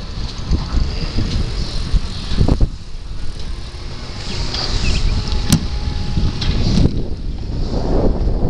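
Wind rumbling on the microphone of a camera riding along on a moving bicycle, with a few sharp knocks and rattles from the bike over the road surface, the sharpest about halfway through.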